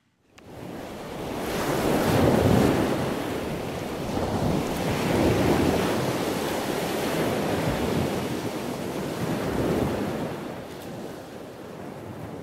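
A steady rushing noise that fades in at the start, then swells and eases every few seconds.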